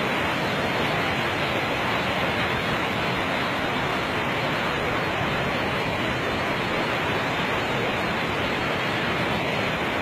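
Steady rushing noise of a swollen, flooded brown river in spate, mixed with falling rain.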